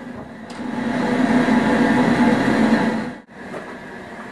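Steady mechanical drone, like a blower or fan running, with a low hum under a rushing noise. It swells during the first second, holds, and cuts off suddenly a little after three seconds in.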